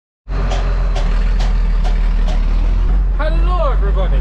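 Tractor engine idling heard from inside the cab, a steady low hum, with a light tick repeating about twice a second for the first couple of seconds. A man's voice starts near the end.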